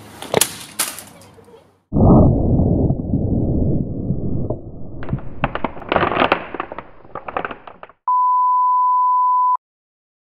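A Video 8 camcorder dropped from a roof: a few sharp knocks as it falls, then a sudden loud rumbling crash about two seconds in that lasts about three seconds, followed by clattering and crackling as it tumbles on the ground. A steady high beep like a test tone follows for about a second and a half and cuts off sharply.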